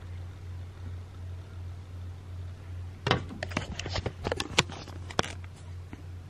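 A steady low hum, then from about halfway a quick run of clicks, knocks and rustles: a handheld camera being picked up and carried to a window.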